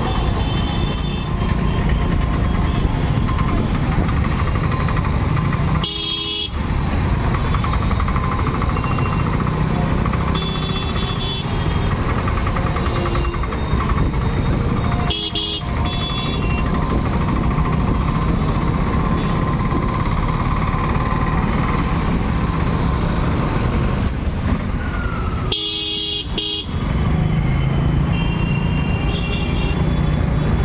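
Busy street traffic: motorcycle and other vehicle engines running, with short horn toots several times.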